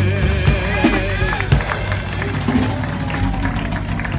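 Live jazz combo of electric piano, upright bass and drum kit with a male singer ending a song: the singer's held note with vibrato stops about half a second in. What follows is a looser stretch with a few drum hits and some voices.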